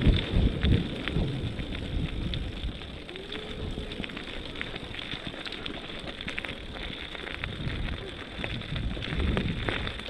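Bicycle tyres rolling over a gravel trail: a steady crunching crackle of grit under the wheels with light rattles of the bike, and a low rumble of wind on the microphone, loudest in the first second.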